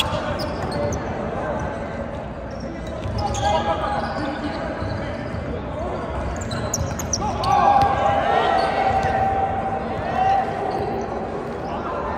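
Sounds of an indoor volleyball rally on a hardwood gym court: the ball being struck and bouncing, with players calling out. A louder held call comes about two-thirds of the way through.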